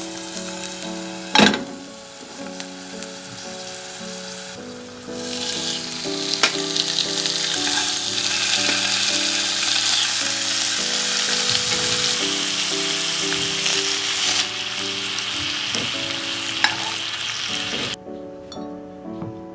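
Garlic cloves sizzling in olive oil in a hot frying pan, then pork spare ribs laid in to sear with a much louder, steady sizzle from about five seconds in that eases a little near the end. There is a sharp knock about a second in, and background music plays throughout.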